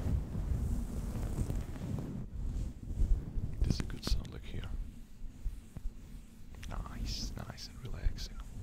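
A piece of soft fabric rubbed and brushed against the microphone, giving a low, muffled rubbing rumble. A few short hissy whispered or mouth sounds come through about three to four seconds in and again near the end.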